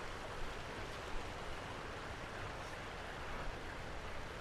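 Shallow glacial stream running steadily over slate rocks and a small cascade, an even rushing wash of water, with a couple of faint knocks in the first second or so.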